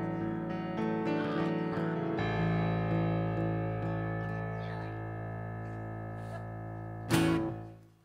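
Live keyboard and guitar ending a song: a chord rings and slowly fades, then a final louder chord struck about seven seconds in dies away to silence.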